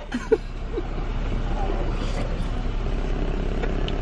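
Helium rushing out of a latex balloon's neck as a person sucks it in through the mouth: a steady hiss lasting about three seconds, over a low steady hum.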